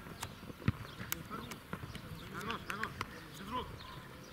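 Outdoor football play on a grass pitch. Scattered sharp knocks from the ball being kicked and players' feet are heard, with the strongest about a second in. Faint players' voices call out in the second half.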